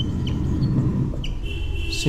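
Whiteboard marker squeaking as it writes: a short high squeak at the start and a longer one from just past a second in. Under it runs a steady low room hum.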